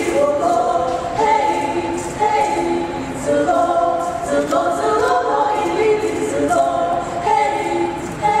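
A group of young women singing a Naga folk song together in chorus, unaccompanied, with held notes moving in steps.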